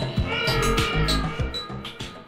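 Afro/cosmic dance track slowed to 33 rpm: a steady drum beat and bass with a high, cat-like sound bending up and down in pitch over it, fading near the end.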